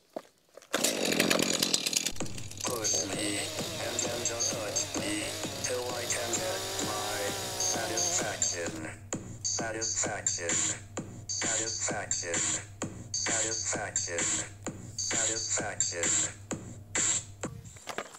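A chainsaw starts and revs about a second in. Then a song with singing and a steady drum beat plays over the sawing, the beat coming in about halfway through.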